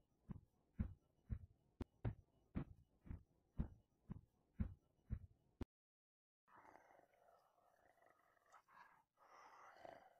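Soft, evenly spaced thuds, about two a second, as a running wolf's footfalls, cutting off suddenly a little past halfway. After a short silence, a rough, low wolf growl-and-snarl runs on to the end.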